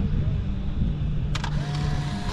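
A Polaroid instant camera's shutter clicks about 1.3 s in, and the motor that ejects the print starts a steady whir straight after, over a steady low outdoor rumble.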